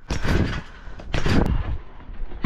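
Two bounces about a second apart: a trick scooter and its rider landing on a trampoline mat, each landing a dull thud with a rush of noise.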